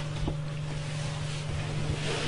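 A steady low hum over an even hiss of background noise, with one faint tick shortly after the start.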